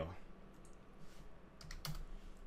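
A quick run of keystrokes on a computer keyboard near the end.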